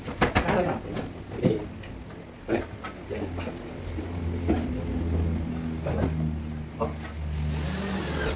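A few light knocks and taps from handling a wall-mounted kitchen cabinet, over a low engine hum that builds through the second half.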